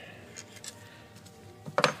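Metal throttle body being handled by gloved hands after its bolts are out: a few light clicks, then a short cluster of sharp metallic knocks near the end as it is shifted against the intake and hoses.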